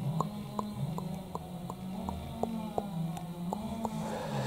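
A chainsaw running, its pitch drifting up and down as it works, with faint clicks about three times a second.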